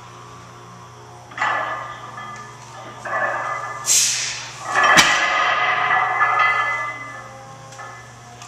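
A man straining through a heavy deadlift. Strained groaning starts as the bar leaves the floor, then comes a forceful hissing breath at lockout and sustained loud yelling. A sharp crack is heard about five seconds in, as the yelling peaks.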